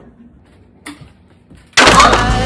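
Faint ringing of an acoustic guitar's strings and a short rasp about a second in as the guitar is grabbed by the neck. Near the end, loud music cuts in abruptly with a heavy hit.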